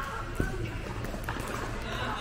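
Pickleball paddles hitting a plastic pickleball during a rally: sharp pops about a second apart, the first the loudest. Voices murmur behind.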